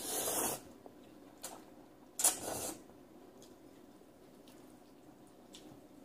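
Noodles slurped off chopsticks: two short, wet slurps, one at the start and another about two seconds later.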